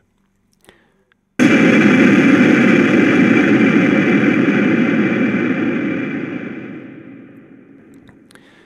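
Building demolition: a sudden loud blast about a second and a half in, followed by the long rumble of the building collapsing, which slowly fades away.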